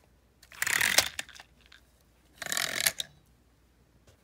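Two short bursts of rustling, scraping noise, each under a second long, from toy trains and a fabric blanket being handled.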